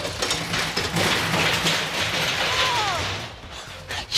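Mechanical clattering and rumbling of amusement ride machinery running. About two and a half seconds in, a brief falling tone sounds over it. The clatter fades near the end.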